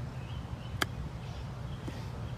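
Golf club striking a ball off the grass on a short, soft chip shot: one crisp click about a second in, over a steady low background rumble.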